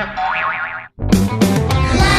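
Cartoon boing sound effect: a quick run of springy, rising pitch wobbles that cuts off to a moment of silence just before a second in. Then upbeat children's song music starts with a beat.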